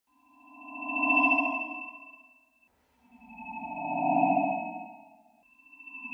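Eurorack modular synthesizer feedback patch, the Z-DSP's Halls of Valhalla Cathedral reverb fed back through a Warps Parasite frequency shifter and a Ripples filter, swelling up and fading away twice, about three seconds apart. Each swell is a cluster of several steady pitched tones held together, from low to high.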